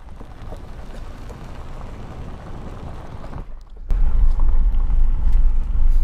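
Vehicle driving slowly on a gravel road: steady tyre and road noise, fairly quiet for the first three seconds or so. It drops out briefly a little past halfway, then comes back as a much louder low rumble.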